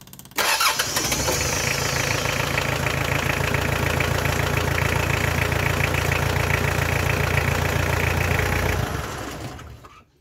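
Mitsubishi 4D56 four-cylinder diesel engine starting up almost at once, then running steadily at idle with a fast, even beat for about eight seconds before its sound fades out near the end. It is the first start after the valve clearances and injection pump timing were set and the air was bled from the injector lines.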